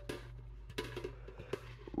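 Faint handling noise: a few soft taps and clicks over a steady low hum.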